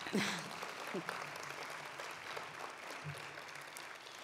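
Audience applauding steadily, with a brief voice sounding at the start and again about a second in.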